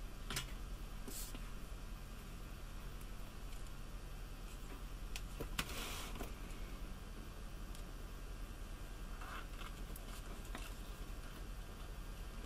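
Quiet handling sounds of hands working with a wired fabric strip at a millinery tube-making tool: a few light clicks and a brief rustle about six seconds in, over a faint steady hum.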